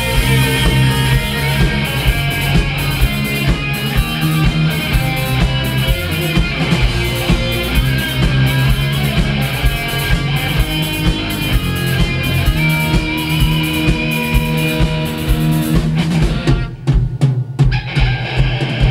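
Live rock band playing: a drum kit keeps a steady beat under electric guitars, bass and keyboard. About sixteen seconds in, the band breaks into a run of sharp unison stop hits with short gaps between them.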